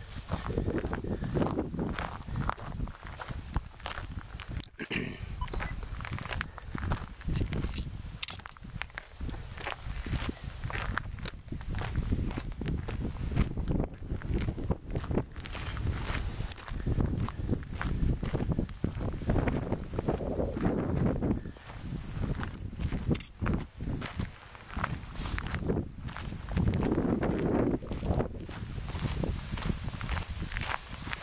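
Footsteps along an outdoor trail, a steady run of short steps under a constant low rumble.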